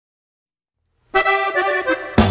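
Silence for about the first second, then a norteño accordion comes in alone with a quick run of notes, the opening phrase of the song.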